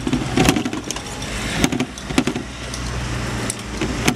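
Rattles and short knocks of a bicycle rolling over paving and tram rails, over a low, steady rumble of city traffic.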